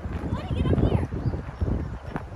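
Running footsteps on wood-chip mulch, a quick run of soft thuds, with a child's high voice briefly heard about half a second in.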